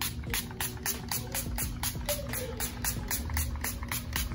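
Fine-mist pump bottle of coconut setting spray (Ciaté London Everyday Vacay) being spritzed at the face over and over in quick succession, about five short hissing sprays a second.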